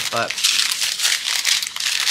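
Small clear plastic packets of diamond-painting drills being handled, the tiny drills rattling inside and the plastic crinkling.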